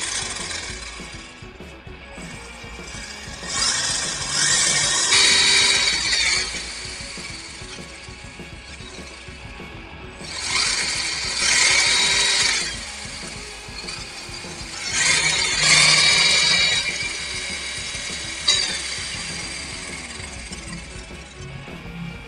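WLtoys 144001 1:14 RC buggy's electric motor and gear drive whining as the throttle is opened in bursts with the wheels spinning free in the air: three main bursts of two to three seconds each, the whine dropping away as each is released.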